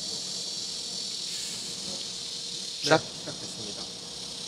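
A steady, high-pitched chorus of insects outdoors, with a person's voice heard briefly about three seconds in.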